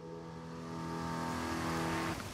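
Golf cart motor running with a steady hum that slowly grows louder as the cart drives along.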